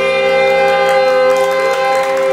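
A jazz big band's saxophones, brass and guitar holding one long, steady chord, the closing note of the tune.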